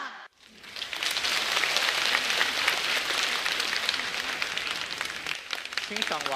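Large audience applauding, the clapping starting a moment in and building to a steady level within about a second.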